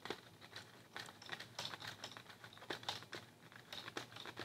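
Faint, irregular clicking of LEGO Technic plastic gears as the small gear at the nose of the 42152 firefighter aircraft is turned by hand, slowly retracting its three synchronised landing gears.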